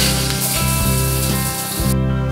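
Shower water spraying, a steady hiss as the shower valve is turned on, over background guitar music. The water sound cuts off suddenly just before the end.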